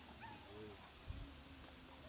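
A puppy whimpering faintly in a few short whines, with a low thump about a second in.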